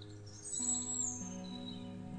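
Ambient background music of long held tones, with a single high bird chirp sliding downward about half a second in.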